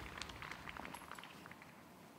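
Faint outdoor ambience with a few soft clicks early on, fading toward near silence.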